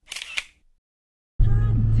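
Camera shutter sound effect: one crisp click burst of about half a second at the start, then dead silence. About 1.4 s in, a steady low vehicle engine hum begins, heard from inside the cabin, with a voice over it.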